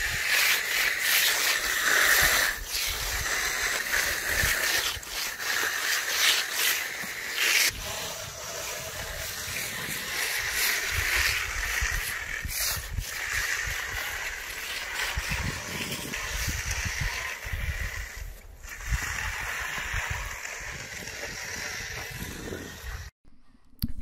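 Magnesium concrete floats, hand-held and on a long pole, scraping and swishing across the wet surface of a firming concrete slab, working out the bull float lines before stamping. The scraping goes on steadily with uneven strokes.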